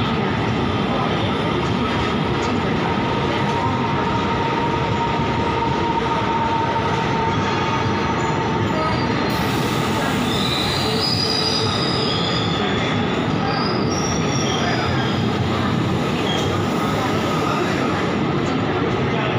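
Indian Railways passenger coaches rolling past on the rails, a steady loud run of wheel-and-rail noise with a thin wheel squeal. Higher squealing tones come and go from about halfway through.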